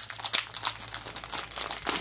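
Plastic packaging crinkling as it is handled, a dense run of irregular crackles.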